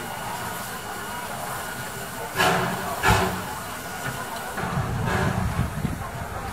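Steam locomotive exhaust: two loud chuffs about two and a half and three seconds in, then further hissing chuffs near the end, over crowd chatter.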